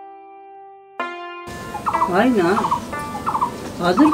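A sustained keyboard note from the background score fades and a second note is struck about a second in; then outdoor background noise comes up and a turkey calls in quick warbling bouts, twice.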